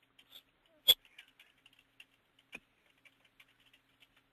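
Computer keyboard typing: a quick, irregular run of keystrokes, with one louder click about a second in and another a little after two and a half seconds.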